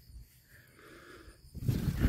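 Rustling and brushing of large Rampicante zucchini leaves as a hand pushes them aside. It is faint at first and grows loud and crackling about one and a half seconds in.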